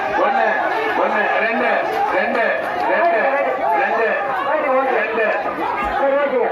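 Crowd chatter: many voices talking and calling out at once, overlapping.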